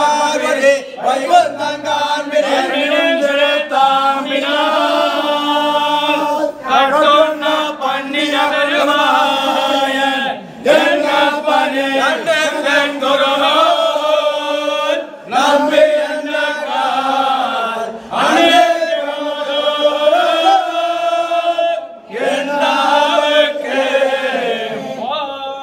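Men's voices chanting a Hindu devotional recitation in unison, on long, steady notes. The phrases are sung one after another, with short breaks for breath every few seconds.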